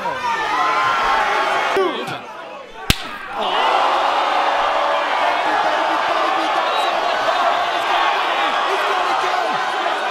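A single hard open-hand slap lands with a sharp crack about three seconds in. A crowd erupts in loud cheering straight after and keeps it up.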